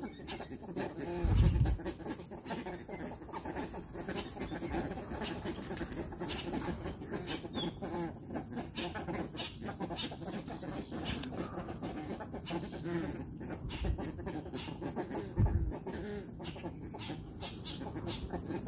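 A flock of American white ibises feeding, with a steady low chatter of calls and many small clicks of bills picking at feed on concrete. Three brief low thumps stand out: one about a second in and two late on.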